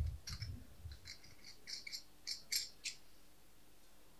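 Small draw capsules and paper slips being handled at a table: a string of short, sharp clicks and light rattles, with dull handling knocks in the first second.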